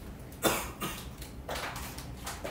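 A person coughing, loudest in a sharp cough about half a second in, with quieter sounds after it.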